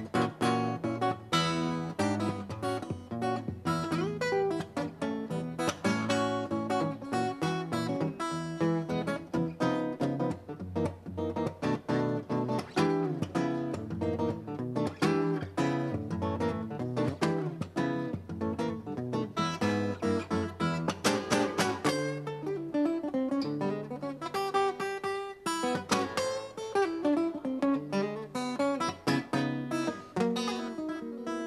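Solo fingerstyle guitar playing a tune, a steady bass line under plucked melody notes, with quick runs of single notes near the end.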